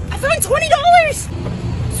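A high-pitched voice exclaiming in about the first second, over a steady low rumble.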